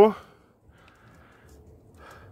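A man's voice finishing a word, then a quiet stretch of faint background noise.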